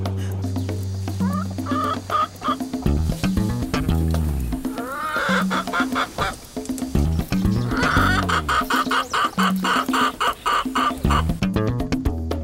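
A rooster clucking in short repeated calls, with a longer quick run of clucks in the second half, over background music with a steady bass line.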